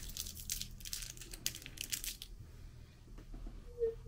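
Plastic wrapper of an individually wrapped hard apple candy being torn open and crinkled, crackling for about two seconds before the handling goes quieter.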